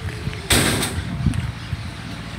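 A loud door slam about half a second in, a sharp bang with a short rough tail.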